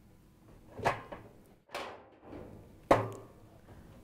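Sheet-metal dryer front panel being lifted off its lower clips: a soft knock about a second in, a short scrape, then a sharp metallic clack near the end, the loudest of the three.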